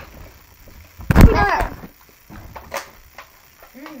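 A flipped plastic water bottle landing on the table with one loud thud about a second in, followed by a short vocal cry; a fainter knock follows near three seconds.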